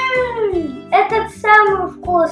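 A young child's voice making wordless vocal sounds: one long call falling in pitch, then two shorter ones, over background music with a steady beat.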